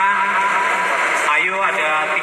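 Speech: a man talking into a handheld microphone, in a low-fidelity recording with little treble.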